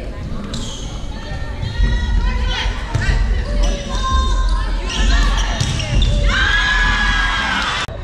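Volleyball rally in a gym hall: the ball is struck several times with sharp slaps and thuds, among players' shouted calls, with a long held call near the end.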